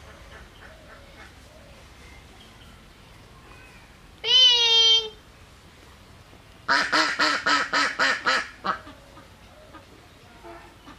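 Air let out of a rubber balloon through its pinched neck: one loud squeal lasting under a second about four seconds in, then a quick run of about nine squawks, some five a second, near the two-thirds mark.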